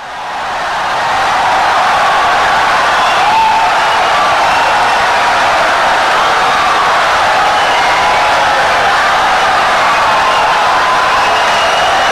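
Audience applause, steady and loud, with a few voices cheering over it; it swells up from silence in the first second.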